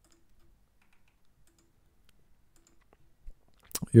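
Near silence with faint, scattered computer clicks, then a sharper click shortly before a man starts speaking at the very end.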